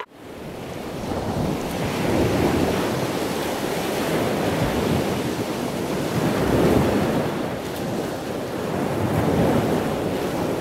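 Rushing noise like surf or wind. It fades in over the first couple of seconds, then swells and ebbs slowly every few seconds, and fades out just after the end.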